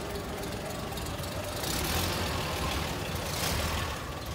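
Engine of a 1934 Bentley open tourer running at low speed as the car moves off, a steady low rumble that swells briefly twice.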